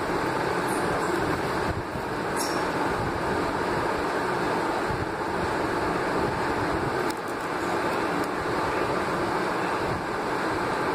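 Steady rumbling background noise with no distinct source, holding level throughout, with a few faint clicks about seven seconds in.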